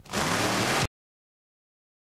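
A burst of hiss-like static lasting under a second, the kind heard at an edit in a videotape recording. It cuts off suddenly into dead silence.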